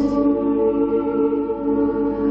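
Live music: a slow, layered chord of sung voice, sounding like a small choir, the notes held steady, with a change of chord right at the start.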